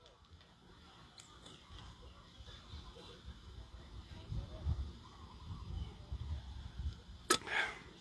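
A man drinking from a bottle close to a microphone: faint low gulps, about two a second, then a sharp click and a short breath or vocal sound as he stops.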